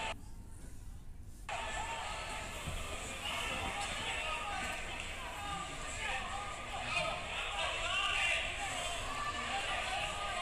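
Indistinct voices of players and a small crowd calling out at a football match, over a steady stadium background. The voices drop away for about the first second and a half, then carry on.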